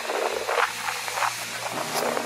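Steady rushing of wind and small waves washing onto a lake beach, with wind noise on the microphone.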